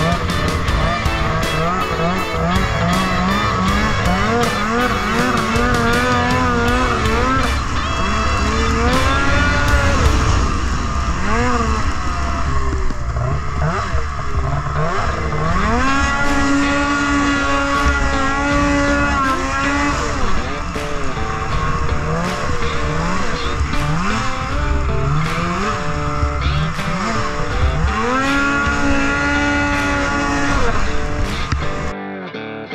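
Polaris IQR 600R snowmobile's two-stroke twin engine revving hard under throttle: its pitch climbs and holds high for a few seconds at a time, drops off and climbs again, with a run of short throttle blips late on.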